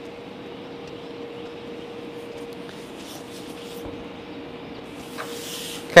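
Steady room hum with a constant faint tone, and near the end a brief soft swish of a hand wiping across the smooth, freshly cleaned shelf surface.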